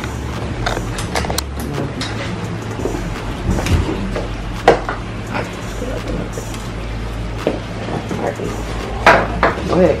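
Clothes and plastic packaging being handled and rustled while packing, with scattered light clicks and knocks; the sharpest knock comes about halfway through, with a cluster of louder handling sounds near the end.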